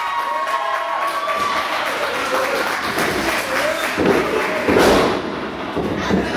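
Spectators shouting and calling out, with two heavy thuds on the wrestling ring mat about four and five seconds in, the second the louder.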